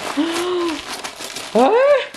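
Gift-wrapping paper crinkling and rustling as a child tears at a wrapped present. A short wordless voice sound comes early, and a louder voice rising in pitch comes near the end.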